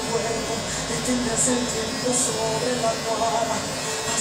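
Corded electric hair clipper buzzing steadily as it trims around the ear and sideburn, with a voice or singing from background music over it.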